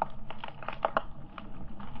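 Underwater sound picked up by a camera: rapid, irregular clicks and crackles over a steady low water rumble.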